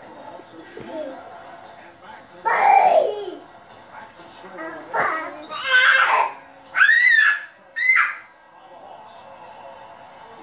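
A toddler babbling and shouting excitedly. Near the end come two short, high-pitched squeals in quick succession.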